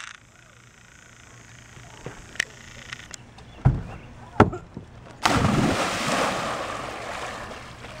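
A person jumping off a wooden dock into a lake: a thump on the boards, then a loud splash a little past halfway that slowly washes out as the water settles.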